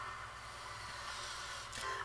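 Faint steady hiss and low hum from playback of a music video's animated subway-station intro, with a train pulling in on screen. A brief rise in level with a few clicks comes just before the end.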